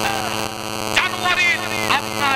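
A man's voice preaching through a microphone and public-address system, starting about a second in, over a steady electrical hum from the sound system.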